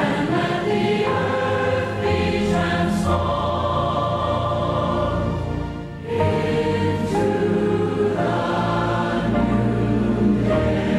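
A choir or congregation singing a devotional hymn in long held phrases, with a short break between phrases about six seconds in.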